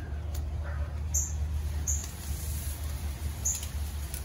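Outdoor ambience: a steady low rumble with four faint, short, high-pitched chirps spread through it.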